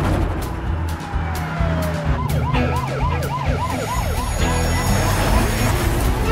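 Police car siren on a fast yelp, a rising-and-falling wail about four times a second, starting about two seconds in after a single long falling tone. It sounds over a low music score.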